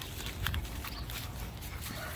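A dog sniffing and rooting through dry leaf litter: scattered soft crackles and rustles, with footsteps on grass.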